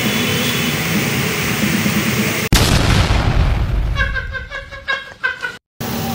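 Steady rush of water from a small park waterfall. About two and a half seconds in it is cut off by a sudden loud boom that dies away over a second or so, followed by a few short pitched sounds and a brief dead silence from an edit.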